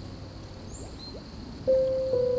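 Slow relaxing piano music over a soft bed of flowing water: the previous notes die away and a new note rings out near the end. A few faint, short high chirps sound in the middle.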